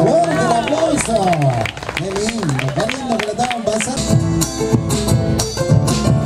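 Live band music with a sliding, wavering melodic line. About four seconds in, the drums and guitars come in with a steady beat.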